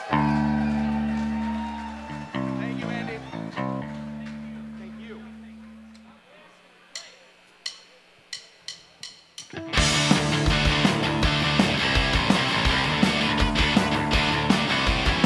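A held electric guitar chord rings out with a few chord changes about two to four seconds in, then fades away. A few sharp clicks follow, and about ten seconds in a full rock band of drums, bass and guitars comes in loud.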